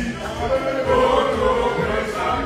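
A group of men singing a chant together, loud and continuous, with music.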